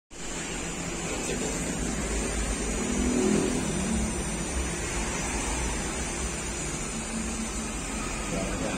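Schleicher three-phase electric gearmotor (2.2 kW motor on a 1:9 reduction gearbox) running steadily, a continuous hum with mechanical running noise.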